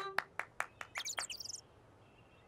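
Cartoon chicks cheeping: a brief flurry of high chirps about a second in, over a run of light ticks, about five a second, that fade out.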